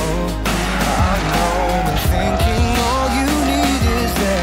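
A rally car's engine revving hard through a tight bend, with tyre squeal, under a loud backing music track.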